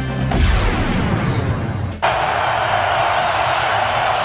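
A broadcast music sting with a heavy low hit and sweeping swoosh. About halfway through it cuts off abruptly, and steady stadium crowd noise takes over.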